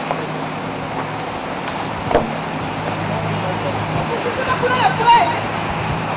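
Street traffic with a steady engine hum from a car close by, and brief voices about four to five seconds in.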